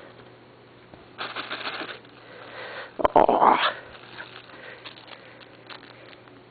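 Short bursts of rustling close to the microphone: a brief one about a second in, then a louder one with a click about three seconds in.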